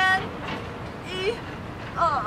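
A woman's voice counting aloud in Mandarin for a stretching exercise, short counts about a second apart, over a steady outdoor background hiss.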